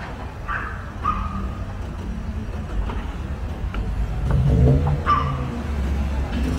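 City street traffic: a steady low rumble of car engines, swelling as a car accelerates past a little after the middle. A dog gives a short yelp about half a second in and again near the end.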